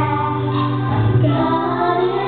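A young female singer singing a gospel song live over musical accompaniment with a steady low bass, amplified through a PA system.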